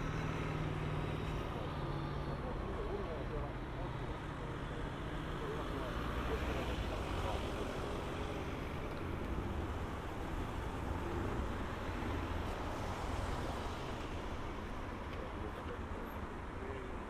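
Road traffic at a city intersection: cars driving past close by, their engine and tyre noise swelling in the middle as one passes near.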